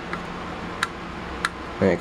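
Three small sharp clicks, about two-thirds of a second apart, as a small screwdriver turns a screw that fixes a 2.5-inch SSD into a laptop drive caddy.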